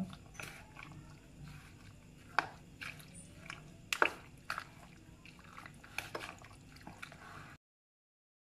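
Raw chicken being mixed by hand into a thick yogurt-and-spice marinade in a plastic tub: irregular wet squelching and squishing, with a few sharp clicks against the tub, the loudest about 2.5, 4 and 6 seconds in. The sound stops abruptly shortly before the end.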